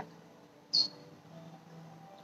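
A single short, high-pitched bird chirp, slightly falling in pitch, a little under a second in.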